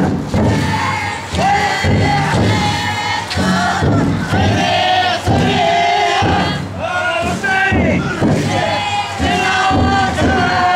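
A large group of futon daiko bearers shouting a rhythmic carrying chant together, short calls repeating about once a second as they shoulder the float.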